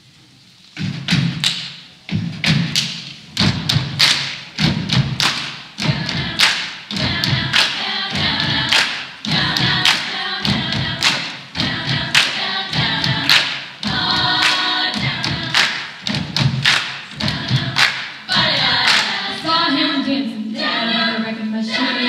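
Female a cappella group keeping a steady beat of hand claps and low thumps, about one and a half beats a second, with voices under it; close-harmony singing swells in near the end.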